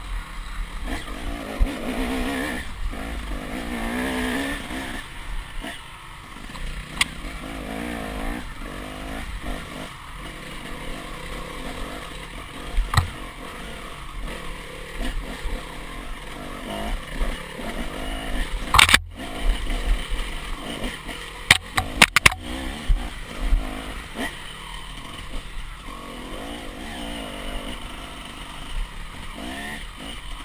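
KTM 300 two-stroke enduro motorcycle engine running on a steep dirt climb, its pitch rising and falling as the throttle is worked. A little past the middle come a handful of sharp knocks.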